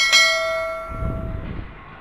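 A single bell chime sound effect, struck once and ringing with several clear tones that fade over about a second and a half. A low rumble swells under it about a second in.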